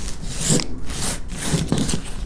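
Hands rubbing and pressing crumpled aluminium foil inside a plastic zip-lock bag, crinkling and rustling in several rubbing strokes.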